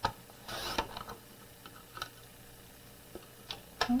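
Sliding paper trimmer cutting a cardstock panel: a sharp click as the blade carriage is pressed down, then a brief swish of the blade running through the paper about half a second in, followed by a few light clicks and taps as the trimmer and panel are handled.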